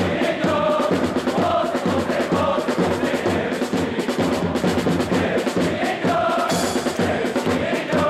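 A section of football supporters chanting a song in unison, led by a bass drum beating steadily under the chant.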